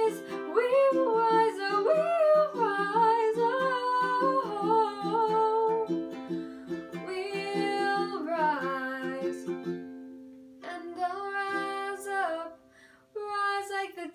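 A woman sings long, held notes over a ukulele strummed in a steady rhythm. About two-thirds of the way through the strumming stops and the voice carries on almost alone, breaking off briefly shortly before the end.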